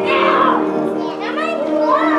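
A youth group singing, with instrumental accompaniment under the young voices.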